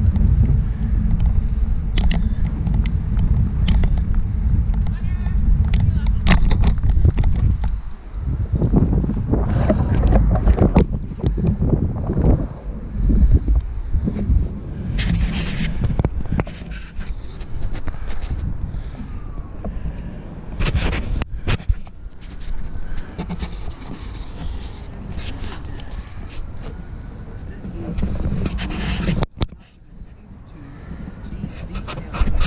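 Wind buffeting the microphone of a moving action camera, a steady heavy rumble, with indistinct voices now and then. It breaks off abruptly near the end.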